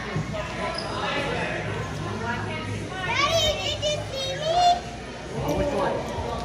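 Children's and adults' voices talking and calling in a large, echoing hall, with two high-pitched children's shouts about halfway through.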